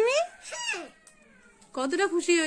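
A young girl's high-pitched, excited voice making short wordless calls that rise and fall in pitch, then a pause of about a second before her voice starts again near the end.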